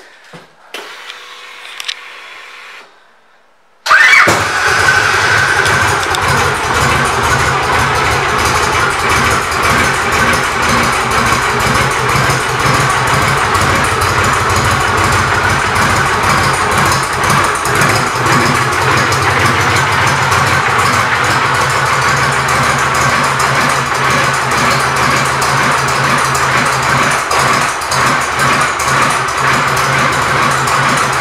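2004 Victory Kingpin's 92-cubic-inch V-twin, fitted with Victory performance pipes, starting suddenly about four seconds in and then idling steadily.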